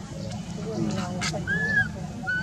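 Baby macaque giving one high, arched crying call about one and a half seconds in, the cry of a hungry orphaned infant wanting milk.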